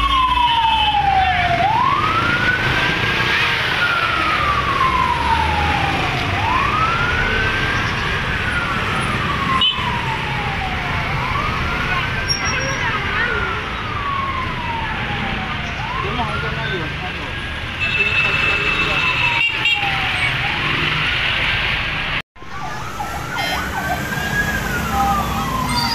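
Emergency vehicle siren on a slow wail: each cycle rises quickly, then falls slowly, repeating about every five seconds over street and crowd noise. The sound cuts out for a moment near the end.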